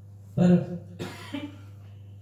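A man coughs briefly, close to a microphone, about a second in, just after saying one short word. A low steady hum runs underneath.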